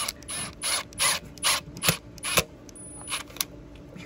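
A screw being driven through a steel hinge into a wooden door frame: a run of about seven short ratcheting bursts, about three a second, that stops about two and a half seconds in.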